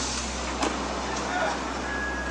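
Car engine running at a steady idle, a low even hum.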